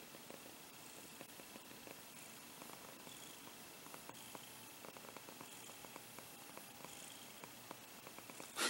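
Domestic cat purring faintly and steadily while being stroked.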